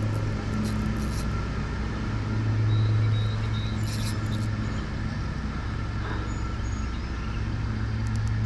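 A lawn mower's small engine running steadily, a constant low drone, with a few faint clicks about four seconds in.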